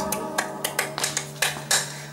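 A break between sung lines: a run of sharp hand snaps, about four a second, keeping time over a low classical-guitar note left ringing.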